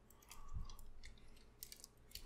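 Faint rubbing and a few small clicks of the hard plastic parts of a Transformers Masterpiece MP-44 Convoy figure being handled and moved during its transformation.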